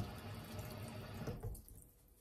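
Kitchen faucet water running into a stainless steel sink, then shut off about one and a half seconds in.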